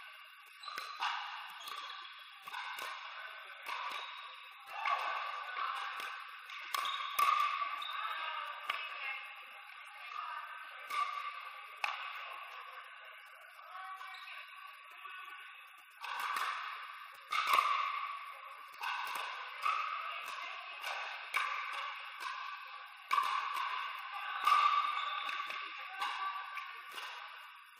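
Pickleball rally: paddles striking a hollow plastic pickleball, a sharp pop about every second, each ringing with echo in a large indoor court hall. The hits thin out for a few seconds in the middle, then pick up again.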